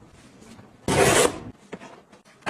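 A foam slide slipper scraping against a wire wall rack as it is pushed into place: one short, loud rasp about a second in.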